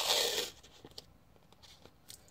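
Masking tape being pulled off its roll: a short rasping strip-and-tear lasting about half a second, then a few faint ticks of handling.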